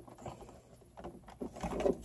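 Faint rustling and small clicks of insulated electrical wires being bent and pushed inside a wall switch box, with a brief louder rustle near the end.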